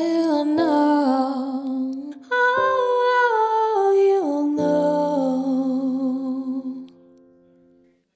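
A female vocalist sings the closing phrase of a song in long held notes over a piano backing track, sliding up into the first note and stepping down to a final note. The voice and piano fade out near the end.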